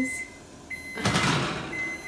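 Kitchen oven door being swung shut, with a short rushing noise about a second in. A thin steady high whine sounds underneath.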